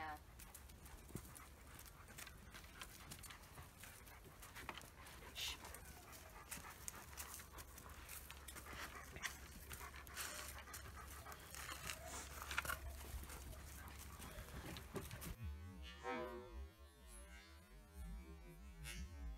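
Dogs panting faintly at close range, with scattered clicks and rustles. Near the end the sound turns warbled and smeared as the audio is slowed down.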